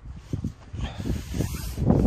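Wind buffeting the phone's microphone: irregular low rumble that starts suddenly and grows louder, with a few knocks of the phone being handled.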